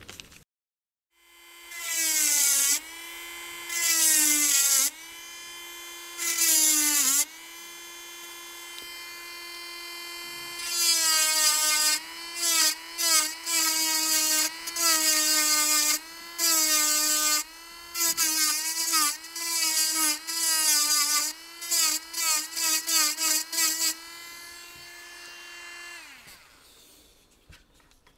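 Handheld rotary tool running at high speed, cutting a slot into a wooden lure section. The motor's pitch dips each time the bit bites into the wood, with repeated bursts of grinding through most of the run. It starts about a second in and stops shortly before the end.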